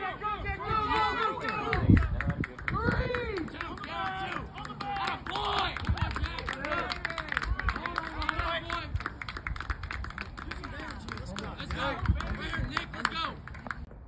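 Crowd of spectators cheering and calling out over one another, with scattered clapping.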